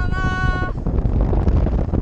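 A rider's high-pitched scream, held steady and ending under a second in, over heavy wind rumble on the ride-mounted camera's microphone as the slingshot ride's cage swings through the air.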